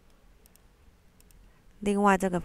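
A few faint computer mouse clicks, two about half a second in and two more just after a second in; a voice starts speaking near the end.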